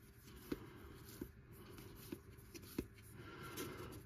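Faint handling of a small stack of trading cards in the hand: a quiet rustle with a few light ticks as the cards are slid through one by one.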